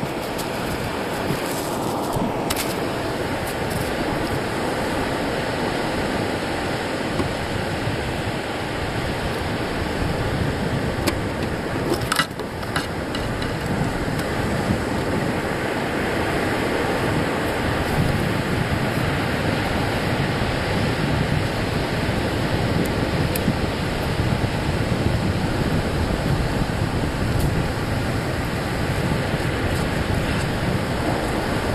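Surf breaking and washing up the beach, mixed with wind on the phone's microphone, a steady rushing noise. A few small knocks near the start and one sharper knock about 12 seconds in, from the phone being handled or settling.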